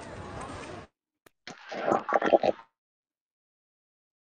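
Outdoor background noise picked up by a phone microphone on a live call cuts off abruptly to dead silence just under a second in. A single click and then a loud burst of sound lasting about a second break the silence near the middle, before it drops out again: the call audio is dropping out because of a failing headset connection.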